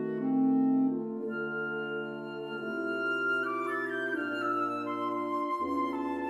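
Wind quintet of flute, oboe, clarinet, bassoon and horn playing classical chamber music in sustained chords that change every second or so. About three and a half seconds in, an upper line rises above the chords, and a low bass note enters near the end.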